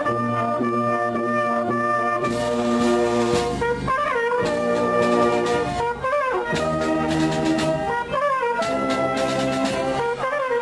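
Town wind band playing, with the brass to the fore. It holds long chords that change about every two seconds, each linked to the next by a short rising run.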